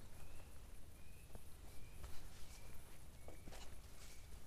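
Footsteps of a hiker walking down a grassy forest trail, irregular soft thuds, while a bird repeats a short high chirp a little more than once a second.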